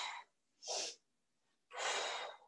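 A woman breathing hard from the effort of plank spider crunches: a short breath about two-thirds of a second in, then a longer one near the end.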